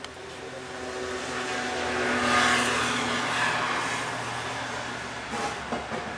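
A car driving past, its engine and tyre noise swelling to a peak about two and a half seconds in and then slowly fading.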